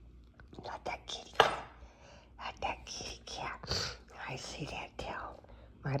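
A woman whispering soft baby-talk, with one sharp click or smack about one and a half seconds in.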